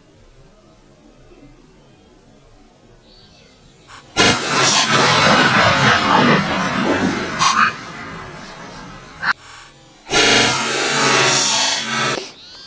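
A 28-gauge shotgun shot about four seconds in, with a sudden, loud start, followed by a few seconds of loud, noisy commotion. A second loud noisy stretch comes near the end.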